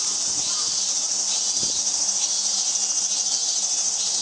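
A steady, high-pitched chorus of insects.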